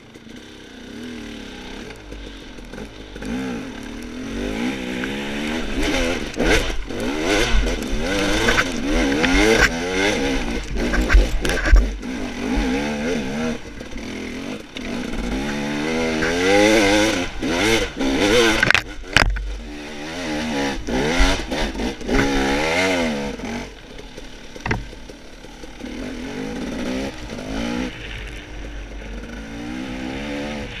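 Dirt bike engine pulling away and revving up and down repeatedly under throttle, with scattered knocks and clatter from the bike riding over rough ground.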